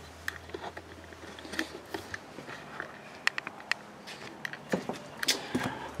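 Light scattered clicks and knocks of footsteps and camera handling as someone walks through a trailer carrying the camera, over a low hum that stops about two seconds in.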